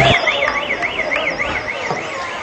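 An electronic siren tone warbling rapidly up and down, about five sweeps a second, with faint crowd chatter beneath.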